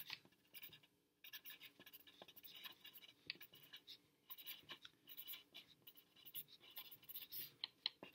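Faint scratching of a pencil writing on lined paper, in quick short strokes with brief pauses about a second in and near the middle.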